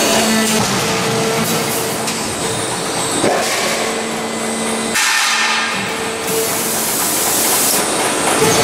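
Sheet-metal production-line machinery running: a steady hiss with a motor and hydraulic hum whose tones come and go, the sound changing abruptly about five seconds in.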